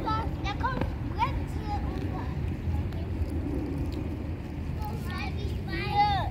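Children's voices: short, high-pitched calls and chatter near the start and again near the end, over a steady low outdoor rumble.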